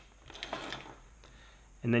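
Faint scraping and handling of a metal RCA plug being pushed into a plastic keystone jack, about half a second in.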